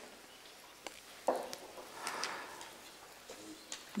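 A quiet pause in a large room, with a few faint clicks and small handling knocks and a brief muffled sound about a second in.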